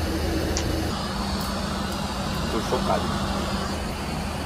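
Steady low hum and air rush of a Boeing 777 airliner cabin, with a short click about half a second in and brief faint voices near the end.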